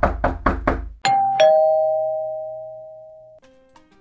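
A quick run of knocks on a door, about five a second, ending about a second in, followed by a two-note ding-dong doorbell chime, a higher note then a lower one, that rings out and fades over about two seconds.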